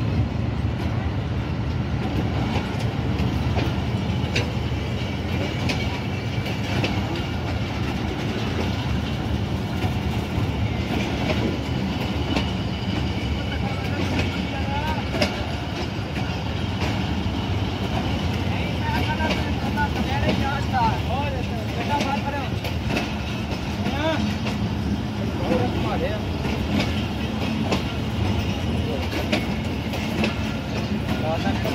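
A Pakistan Railways passenger train's coaches rolling past along a platform, with a steady rumble and the clack of wheels over rail joints. People's voices join in from about twenty seconds in.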